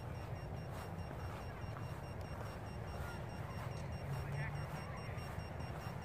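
Outdoor field ambience: a steady low rumble with faint distant voices and a few faint short chirps.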